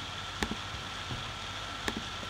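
Two sharp computer mouse clicks about a second and a half apart, over a steady hiss and faint high hum of room and microphone noise.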